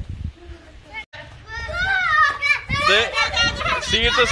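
Children's voices: after a brief break in the sound about a second in, a child calls out in high, excited tones that rise and fall, growing louder toward the end.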